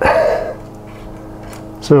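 A man's voice at the very start and again near the end, with a faint steady hum in the quiet stretch between.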